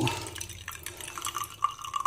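Hot tea pouring in a thin stream from a porcelain gaiwan, through the gap under its lid, into a glass teapot: a steady trickle and splash of liquid filling the pot.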